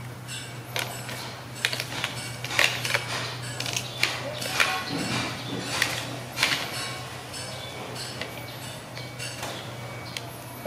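Hard plastic parts of a toy shopping trolley clicking and knocking together as it is being assembled: a string of sharp, irregular clacks over a steady low hum.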